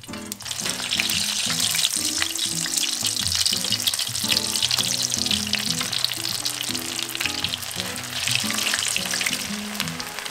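Potatoes frying in hot canola oil in a cast iron skillet: a dense crackling sizzle that swells up within the first second as they go into the oil and then holds steady.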